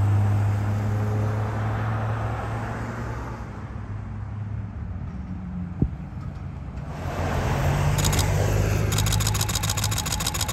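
Street traffic: a vehicle's engine hums steadily and fades over the first few seconds, then another car passes near the end. A single sharp click comes a little before the middle, and a rapid run of ticks fills the last two seconds.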